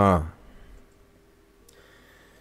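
A man's narrating voice finishing a word, then a pause of about a second and a half with only a faint steady background hum.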